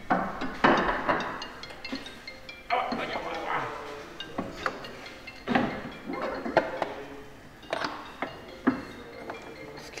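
Light metallic clinks and knocks as a drive shaft is worked into its splines under the car, with background music.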